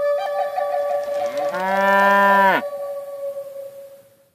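A cow moos once, rising in pitch at the start, holding for about a second and then cutting off. Under it, a held note of flute music fades out near the end.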